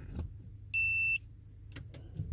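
Audi A4 B8 1.8 TFSI four-cylinder engine idling steadily, heard from inside the cabin. A single short electronic beep sounds about a second in, and a few faint clicks follow near the end.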